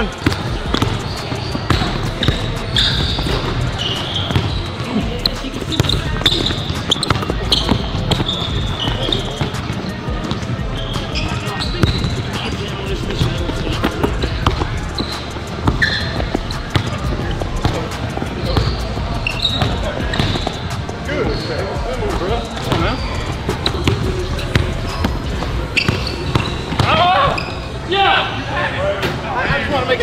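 Basketballs dribbled on a hardwood gym court during one-on-one play: a steady run of ball bounces throughout.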